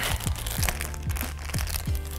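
Foil blind-bag packaging crinkling and crackling in the hands as a mystery-mini figure is unwrapped, over background music.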